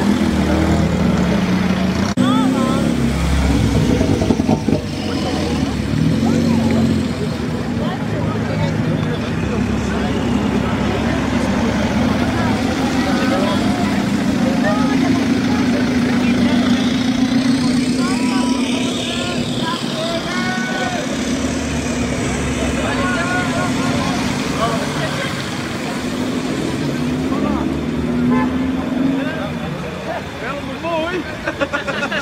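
Modified cars driving off one after another on wet tarmac, engines running with a steady drone and tyres hissing on the wet road, over spectators' chatter and calls.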